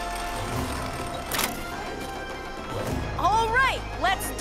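Cartoon soundtrack: background music with held tones, a sharp crack about a second and a half in, and an animated voice with big swooping pitch near the end.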